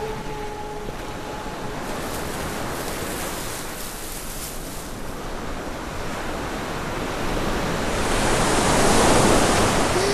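Rushing wash of sea surf, a sound effect that swells toward the end. A held music note fades out in the first second.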